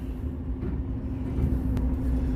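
Truck engine idling inside the cab: a steady low rumble with a constant hum.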